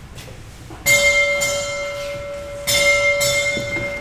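A small bell struck twice in quick succession about a second in, then twice more near the end. Its clear, high tone rings on between the strokes.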